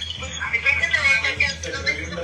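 A woman's voice talking in a recording played back from a phone, over a steady low hum.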